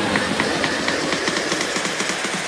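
Sawmill band saw running, with a regular pulse about four times a second.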